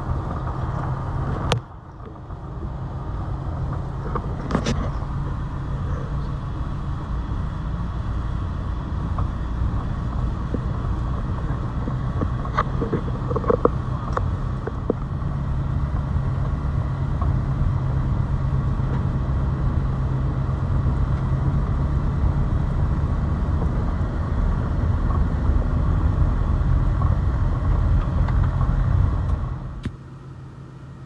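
Road noise heard from inside a moving passenger van: a steady low rumble of engine and tyres, with a few brief clicks and knocks. It cuts off suddenly at the end.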